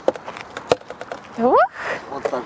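A few light knocks, then about a second and a half in a short, rising squeal from a woman's voice as a playground seesaw lifts her, ending in a breathy rush.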